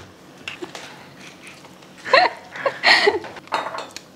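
Hand mixing chopped dried fruit in a steel pot, with faint light clicks against the metal; a brief bit of voice comes in about halfway through.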